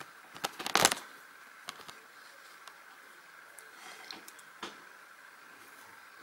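Handling noise of backstitch being worked on a plastic cross-stitch canvas: a brief rustle about half a second in, then faint scattered clicks and rubbing as fingers hold and turn the canvas and needle.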